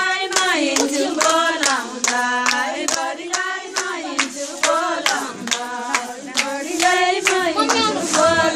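Women singing a Teej folk song to steady rhythmic hand clapping, about two to three claps a second.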